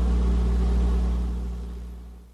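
A steady low hum with a few even overtones, fading out over the second half.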